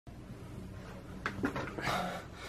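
Faint steady room hum, then a few short breathy, rustling sounds in the second half as a person moves in and sits down in front of the camera.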